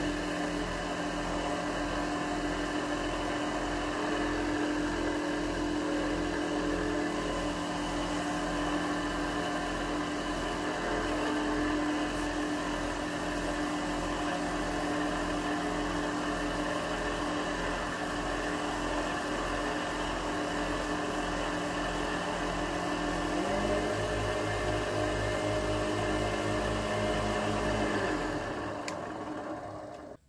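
Small benchtop wood lathe running steadily with a pen blank spinning on the mandrel during the wax-finishing stage. The hum shifts in pitch about three-quarters of the way through and fades out near the end.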